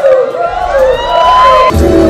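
A woman singing wordless vocal runs with little or no backing, ending on a long high note that slides slightly upward. Near the end it breaks off and live band music with bass and drums takes over.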